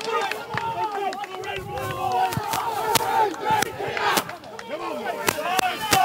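A football team's huddle shouting and yelling together, many voices overlapping, with scattered sharp claps as the players rev each other up.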